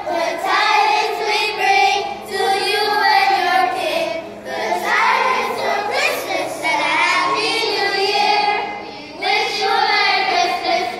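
Children's choir singing together, held notes in phrases with brief breaks between them.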